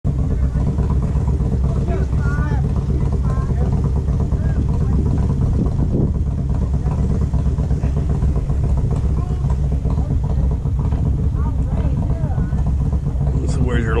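A steady low rumble, with faint talking voices now and then.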